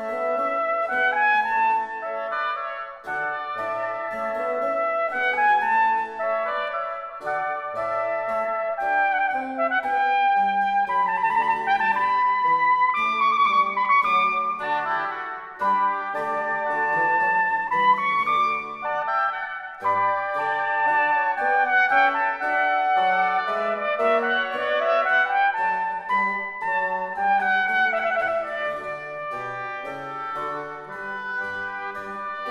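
Baroque chamber music in a slow Adagio movement: a trumpet plays long melodic lines with oboes, bassoon and harpsichord continuo, several lines weaving around one another.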